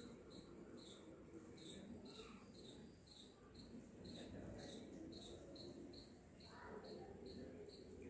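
Hands rubbing and working through wet hair on the scalp, a soft, quiet rustle. Faint, short high chirps repeat evenly, about two to three a second.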